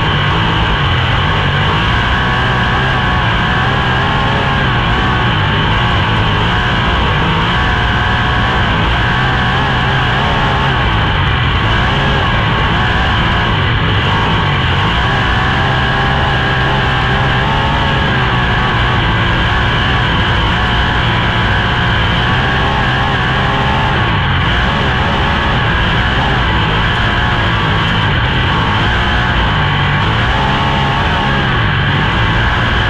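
A 410 sprint car's V8 engine running at speed around a dirt oval, heard from the cockpit, with music laid over it.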